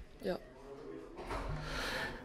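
A woman's voice says a short "ja", followed by a quiet pause with a soft breath and faint hum near the end before she answers.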